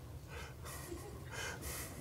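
A man's faint breathing close to the microphone: a few short breathy puffs in quick succession over a low, steady room hum.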